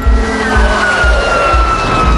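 Cartoon flying-saucer sound effect: a rushing hiss with a high whistle that falls slowly in pitch as the saucer swoops down. Background music with a steady beat of about two thumps a second runs underneath.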